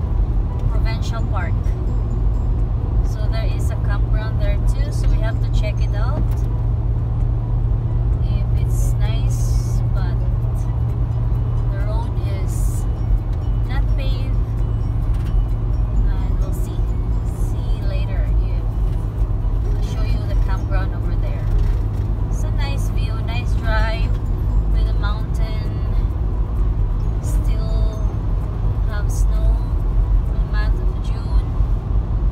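Steady low drone of a car's engine and tyres heard from inside the cabin while driving, with a voice heard over it at times.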